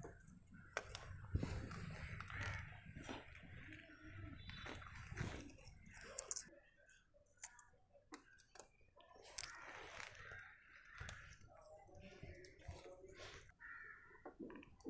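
Faint scattered clicks and snips of a pair of scissors and hands working a wet, muddy lotus tuber and its runners.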